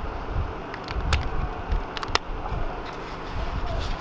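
Wind rumbling on the microphone, with a few sharp clicks from handling the plastic parts of a paintball loader and its 9-volt battery.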